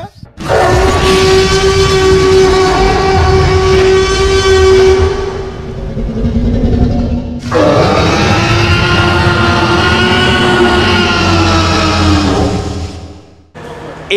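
Two long dinosaur roars from a movie-style T. rex sound effect, each lasting about five to six seconds with a short break between them. The second roar starts with a rising sweep.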